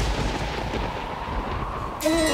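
Rumbling tail of a deep dramatic boom sound effect, fading slowly, over a faint held tone.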